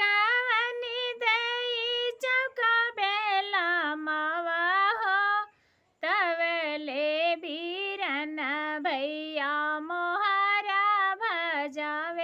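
A woman singing an imli ghotai (tamarind-grinding) folk song solo, without accompaniment, in long held, wavering phrases; she breaks for a breath about five and a half seconds in.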